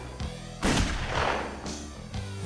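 A single loud gunshot sound effect about two-thirds of a second in, its echo dying away over the next second, over low steady trailer music.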